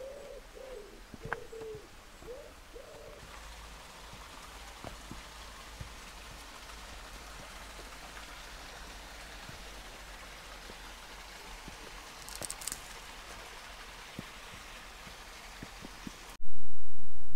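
A pigeon cooing, a few low soft notes in the first three seconds, then a steady faint hiss of outdoor background with a brief high chirp near the end.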